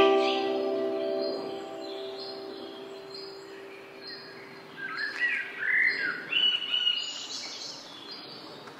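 A final musical chord rings out and fades away over the first few seconds. It gives way to several birds chirping in quick, gliding calls a little past the middle, over a faint steady outdoor hiss.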